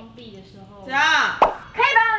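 A young woman calling out loudly in a drawn-out, sing-song voice, asking for help, with a short sharp pop about halfway through.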